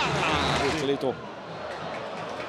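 A male television football commentator speaking for about the first second, then his voice stops abruptly, leaving a steady murmur of stadium crowd noise.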